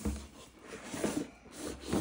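Cardboard rubbing and scraping as a box is slid out of its cardboard sleeve by hand.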